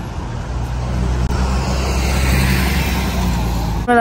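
City road traffic: a motor vehicle's engine hum and tyre noise passing close, growing louder to a peak midway, then cut off suddenly near the end.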